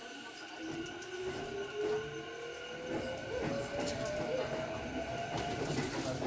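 Sanyo Electric Railway electric train pulling away: its traction motors whine in a single tone that rises steadily in pitch as it gathers speed. Under the whine a wheel rumble builds, with clicks as the wheels pass over the points, heard from inside the front car.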